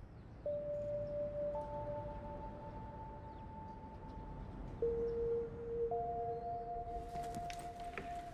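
Slow background music of long held notes, a new note entering every few seconds and overlapping the last. Near the end a quick run of light clicks and knocks joins in.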